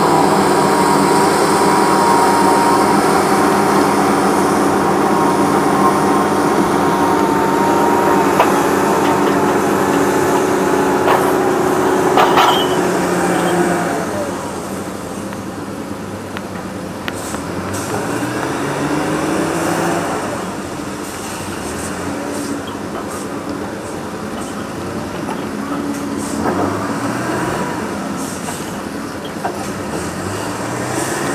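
Heavy diesel logging machinery running, with a steady whine over the engine in the first half. It drops in level about halfway through, then revs up several times in rising surges.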